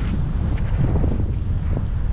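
Wind buffeting the microphone: a steady low rumble with no clear event in it.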